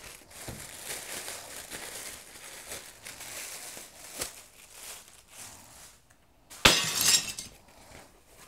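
Plastic mailer bag and foam packaging sheet rustling and crinkling as a parcel is opened and unwrapped, with a short loud burst of crinkling about two-thirds of the way through.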